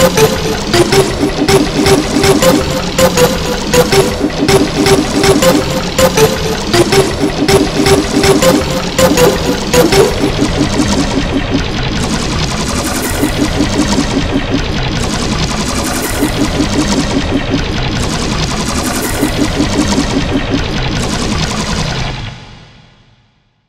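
Heavily edited logo-remix audio, chopped into a rapid stutter. For the first ten seconds or so it is dense fast clicks over short repeating tones. After that it turns into a smoother, steadier repeating loop.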